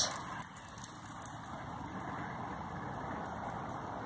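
Shaken bottle of fizzy lemonade squirting a jet through a small screw-punched hole, a steady hiss as the gas pressure drives the lemonade out.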